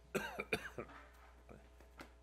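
A man coughing twice in quick succession near the start, in a quiet meeting room.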